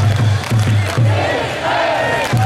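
Baseball stadium crowd chanting and cheering in unison, with a low beat about twice a second.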